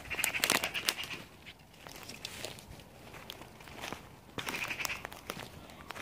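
Footsteps and rustling through woodland undergrowth, with irregular crackles and snaps of twigs and dry leaves.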